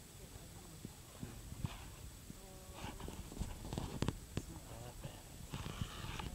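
Low steady rumble inside a slow-moving car's cabin, with short non-word vocal sounds and a few sharp knocks about halfway through.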